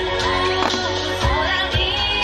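Okinawan eisa music: a sung folk melody with taiko drums, the large barrel drums struck together about every half second.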